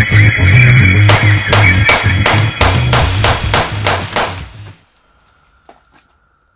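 Rock music with guitar and bass, with a rapid string of about ten sharp gunshots, roughly three a second, over it from about a second in. Music and shots stop together near five seconds in, leaving near silence.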